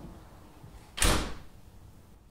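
A door shutting with one sharp bang about halfway through, dying away within half a second.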